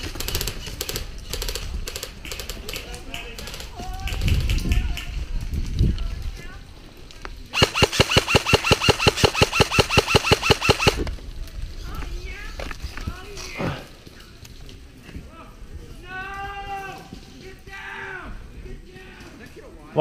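An airsoft electric rifle fires a sustained full-auto burst of about three seconds, starting about halfway through: rapid, evenly spaced loud cracks over a steady whine. Before it, footsteps crunch across gravel and dry leaves.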